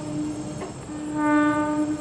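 Train horn of an NJ Transit Arrow III electric railcar: the tail of one blast at the very start, then a louder blast about a second in lasting about a second.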